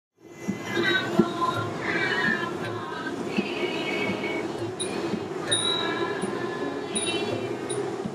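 Traditional Thai music of the kind that accompanies dancers at a shrine: a high, wavering, gliding melody over a steady lower drone. From about five seconds in, small cymbals tick in a steady beat.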